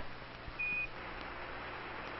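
A single short beep, about a quarter of a second long, over a steady radio hiss and low hum: a Quindar tone keying the air-to-ground radio loop between Mission Control and the Space Shuttle.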